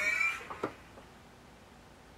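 A man's high-pitched laugh tailing off in the first half-second, then a short click and quiet room tone.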